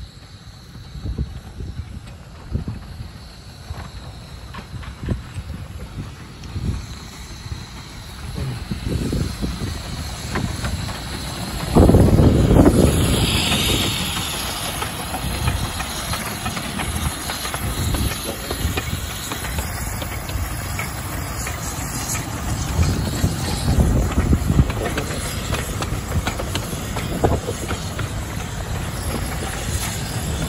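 Miniature 15-inch-gauge steam locomotive Hercules running into the station, its rumble growing louder as it approaches. About twelve seconds in, a loud burst of steam hiss comes as the engine draws level. Then the train's wheels rumble and clatter on the rails as it rolls past.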